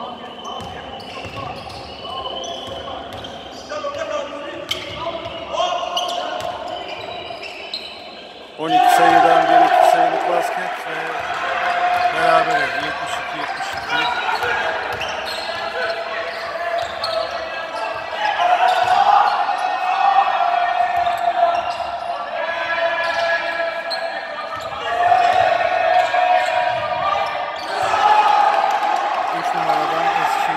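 Basketball bouncing on a hardwood gym floor during play, with voices shouting that echo in the large hall. The sound jumps suddenly louder about nine seconds in, and the shouting then goes on in long held calls.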